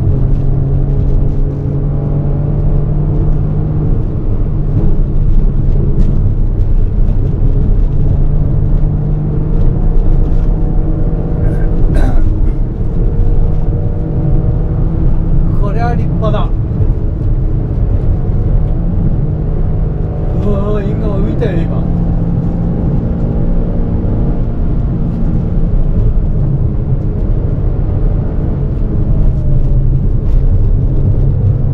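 Honda N-ONE's 660 cc three-cylinder engine pulling hard through a manual gearbox. Its pitch climbs through each gear and drops back at every shift.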